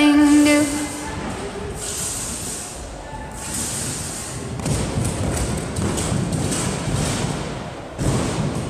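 Music stops about a second in, leaving gym-hall noise with dull thuds of a gymnast bouncing and landing on a trampoline and mats.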